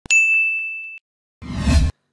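Editing sound effect on a title card: a single bright ding that rings out on one high steady tone and fades over about a second. About a second and a half in comes a short noisy swell with a deep low rumble, growing louder and cutting off suddenly.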